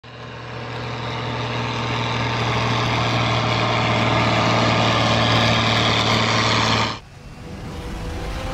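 A heavy truck engine sound effect with a steady low hum, fading in and growing louder over the first few seconds, then cutting off suddenly about seven seconds in.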